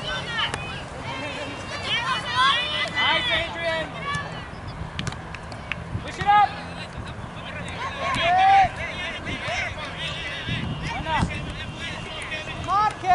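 Shouts and calls from youth soccer players and sideline spectators, a scatter of short overlapping voices, with two louder single shouts about six and eight and a half seconds in. A steady low rumble of wind or handling noise runs underneath.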